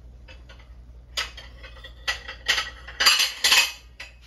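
Metal kitchenware clattering off-camera: a few faint clicks, then a run of louder clinks and scrapes that is loudest near the end.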